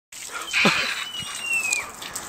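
A person's short yell of "yeah" falling in pitch, with laughter, followed by a thin high whine lasting almost a second that drops at the end.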